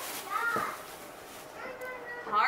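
Quiet voices in the room, children's among them, with a couple of short murmurs and no clear sound other than speech.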